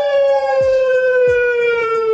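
A man's voice holding one long, loud note that sinks slowly in pitch, like a drawn-out siren-style wail.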